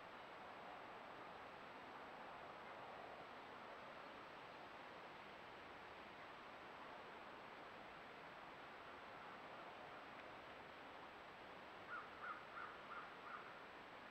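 Near silence: the faint steady hiss of a trail camera's own recording, with a thin high whine. About two seconds before the end comes a quick run of five short high calls.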